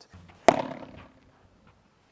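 A padel racket strikes the ball once, sharply, about half a second in, with a short ringing tail that fades over about a second.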